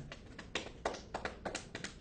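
A quick, irregular run of about a dozen taps and knocks, someone tapping and fidgeting to act out the restlessness of akathisia.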